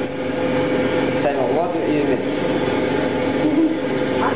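Voices talking indistinctly over a steady machine hum with a constant mid-pitched tone.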